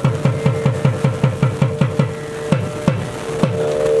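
Thavil drum strokes, each dropping in pitch, about five a second at first and then slowing to about two a second. Over them a nadaswaram holds a steady note that grows louder near the end: traditional South Indian temple music.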